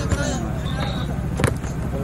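A football kicked on a dirt pitch, one sharp thud about a second and a half in, over voices and a steady low hum.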